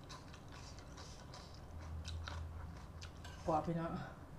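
A person chewing a mouthful of rice noodles and vegetables close to the microphone: a string of short, sharp mouth clicks, with a brief voiced sound near the end.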